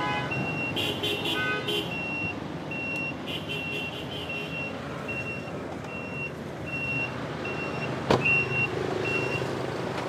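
A car's electronic warning chime, one short high beep repeated evenly a little under twice a second. The headlights are on with the driver's door open. Behind it is a steady low background noise, and there is a single sharp click about eight seconds in.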